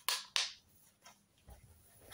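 Plastic DVD case snapped shut: two sharp clicks close together, followed by faint handling noise.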